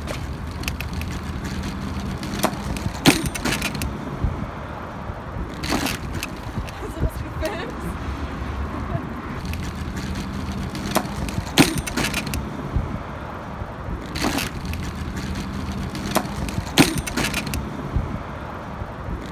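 Bicycles with loaded pannier bags clattering over the kerbs and bumps of a road crossing: sharp knocks every few seconds, some in quick pairs, over a steady hum of street traffic.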